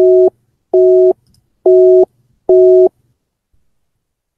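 A voice-call app's busy tone: four short beeps, each a chord of two steady notes, a little under a second apart, signalling that the outgoing call was rejected.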